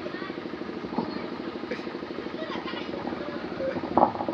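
A small engine running steadily, a low pulsing drone, with faint voices in the background.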